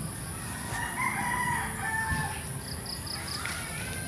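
A rooster crowing: one long call starting about a second in and lasting about a second and a half, followed by a shorter rising call near the end.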